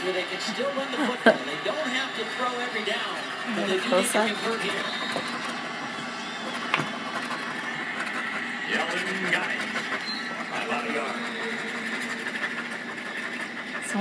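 A coin scratching the coating off a lottery scratch-off ticket, with voices in the background.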